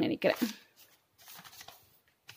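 Pages of a ruled paper notebook being handled and turned by hand: faint paper rustling after a brief spoken word.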